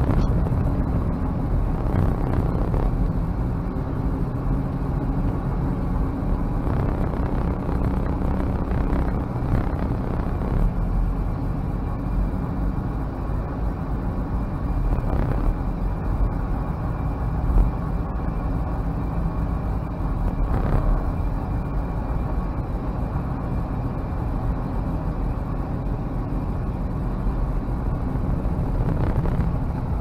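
Cabin sound of a 1995 Toyota Land Cruiser Prado driving at steady speed: a constant low rumble from its 3.0-litre four-cylinder turbo diesel, mixed with road and tyre noise.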